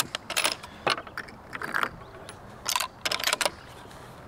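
Elevation turret of a Tract Toric Ultra HD riflescope being turned by hand, a run of sharp detent clicks in several quick bursts as it is dialed back down to 3 mils.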